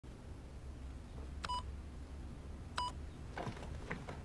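Two short computer beeps about a second and a half apart, each one a steady tone that begins with a click, followed near the end by a couple of softer clicks.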